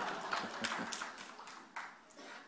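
Scattered audience clapping, thinning out and fading away.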